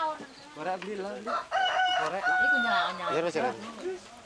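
A rooster crowing: one long call with a held note, starting about a second and a half in and lasting about a second and a half, over people talking.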